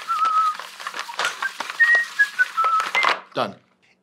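A man whistling a short, wavering tune while hand-cranking a plastic extension cord reel, the cord winding in with a rapid run of clicks and rattles.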